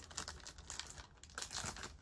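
Faint crinkling and rustling of trading-card packaging being handled, with small scattered clicks.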